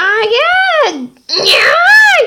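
A child's voice wailing wordlessly in two drawn-out cries, each rising and then falling in pitch.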